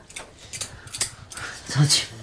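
A short spoken reply, "좋지~" ("it's good"), near the end, after a second or so of quiet kitchen noise.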